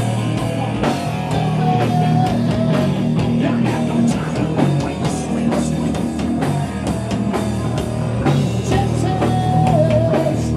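A rock band playing loud, steady rock music: electric guitar, bass guitar and a drum kit, with a few long held notes over the beat.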